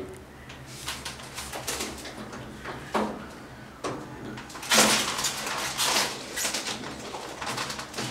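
Crinkly rustling of a foil-and-plastic-wrapped bundle and rattling at an old wooden door's latch, in irregular crackles and knocks, loudest about five seconds in, as the door fails to open.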